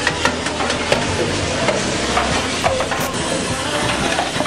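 Busy dining hall din: a steady hubbub of many distant voices with frequent light clatter of dishes and utensils.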